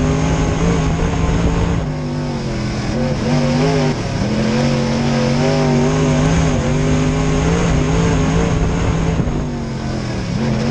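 Dirt late model race car's V8 engine heard from inside the cockpit under racing throttle. Its pitch dips briefly as the throttle eases about two seconds in, again around four seconds, and near the end, then climbs back each time.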